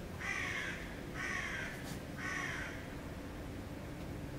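A bird calling three times, each call about half a second long and about a second apart.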